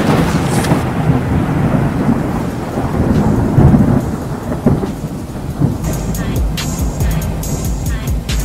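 Thunder sound effect laid over an on-screen lightning strike, a loud low rolling rumble with a few surges that slowly dies away. Music comes in near the end.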